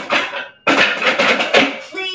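Adjustable dumbbells being set down into their cradles: a short clatter, then a longer, dense rattle of the weight plates and handles settling.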